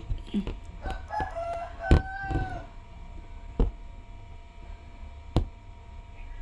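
A rooster crows in the background for about a second and a half, starting about a second in. Sharp taps come about every one and a half to two seconds as the aari hook needle punches through fabric stretched tight on the frame.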